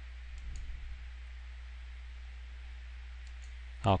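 A few faint computer mouse clicks in the first second, over a steady low electrical hum.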